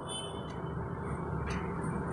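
A steady, low background rumble with no voice or music: room noise.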